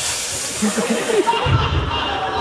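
A performer imitating a vacuum cleaner with her mouth into a handheld microphone: a steady hissing noise that stops about one and a half seconds in, followed by a brief low rumble.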